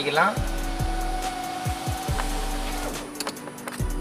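Electric power window of a Suzuki Alto 800 running, a steady motor whine lasting about two and a half seconds before it stops, with background music underneath.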